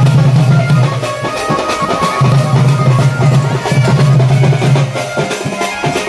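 Loud band party music for a wedding dance: drums beating steadily over a held low note that breaks off twice, with a higher melody above.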